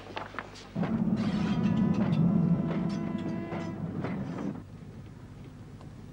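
A train running on the rails: a loud rumble with a steady held tone over it and a few sharp clicks, starting about a second in and dying away after about four seconds, leaving a low steady background.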